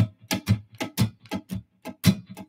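Electric guitar strummed with the chord choked, giving a quick run of short, damped, percussive strokes in a loose shuffle rhythm, about five or six a second, with no sustained ringing chords.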